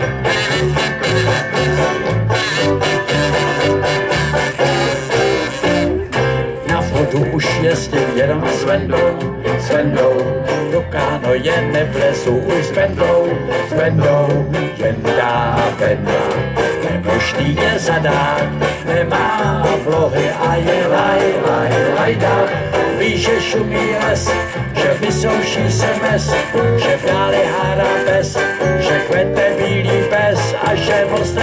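Live banjo band playing with a steady beat: strummed banjos over electric bass and electric guitar.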